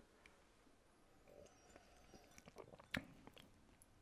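Near silence with faint mouth noises and small clicks from sipping whisky, one sharper click about three seconds in.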